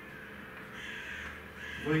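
Chalk scraping on a blackboard during writing: a faint, even scratching with no clear pitch.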